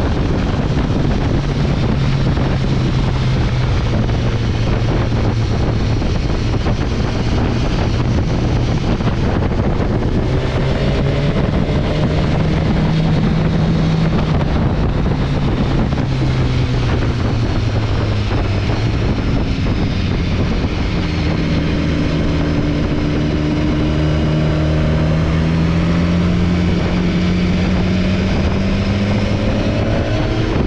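A BMW S1000XR's inline-four engine running under way, with heavy wind noise on the microphone. The engine note dips a little past the middle, then rises steadily over the last several seconds as the revs climb.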